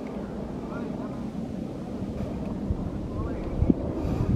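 Wind buffeting the microphone, a steady rush with low gusts that grow stronger near the end, under faint, indistinct voices.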